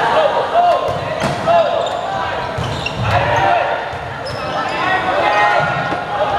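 A volleyball rally in an echoing sports hall: sneakers squeak on the wooden court, and the ball is struck sharply a couple of times, about a second in and again about three seconds in. Players and spectators shout and call over it.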